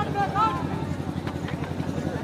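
A steady low mechanical drone, like a small engine running, under a man's voice that stops about half a second in, with a few faint sharp clicks in the middle.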